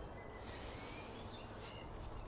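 Faint outdoor background noise with a few faint bird chirps.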